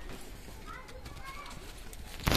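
A few faint, high, rising-and-falling whimpers from young puppies, starting about half a second in.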